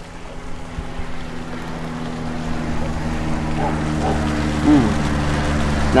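A steady engine hum with a low, even pitch, growing gradually louder from about a second and a half in, as if drawing nearer.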